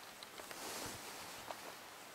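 Quiet room with a few faint, light clicks scattered through it.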